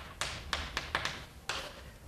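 Chalk tapping and clicking on a blackboard during writing: about five short, sharp taps spread over two seconds.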